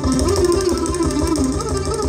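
Indian classical ensemble playing: sarod and violin carrying a gliding melodic line over dense, low drum strokes that come in right at the start.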